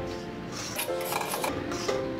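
Background music, over a spatula scraping and rubbing through dry-roasted semolina in an iron kadhai, with a few scraping strokes about a second in and again near the end.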